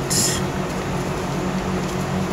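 A steady low hum runs throughout. Just after the start comes a short, high crinkle of a capacitor's aluminium foil and paper winding being unrolled by hand.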